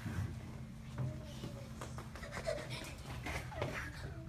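Low murmur of voices and scattered soft laughter from an audience in a hall, over a steady low hum.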